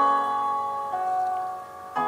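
Instrumental karaoke backing track between sung lines: held chords, shifting once about a second in and dipping in level near the end.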